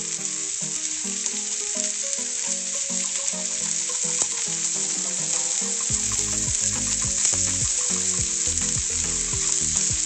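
Onions, peppers and stir-fry vegetables sautéing in butter, and beef patties frying, sizzling steadily in frying pans. About six seconds in, low thumps join the sizzle.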